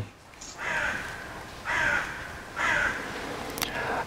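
A crow cawing three times, about a second apart. A single sharp click comes near the end.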